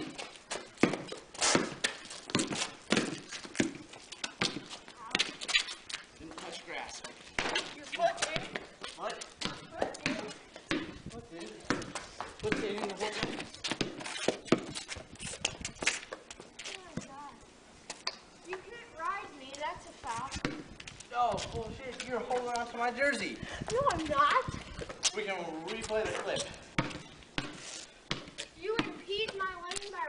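A basketball bouncing again and again on a concrete driveway, sharp knocks about one or two a second, through the first half. Through the second half, boys' voices talking and calling out over the play.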